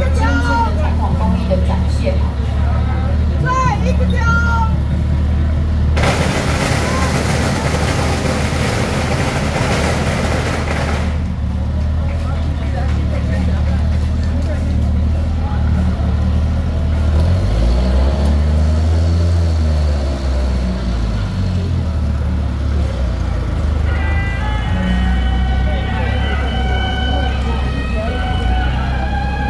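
Vehicle engines idling with a low, steady hum, and people's voices over them. About six seconds in comes a loud hiss lasting about five seconds, and later the engine note rises and falls once.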